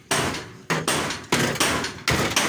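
Hand tool, most likely a hammer, striking the sheet-steel front cab panel of a Hyundai Porter truck: about five sharp, irregularly spaced blows, each dying away quickly.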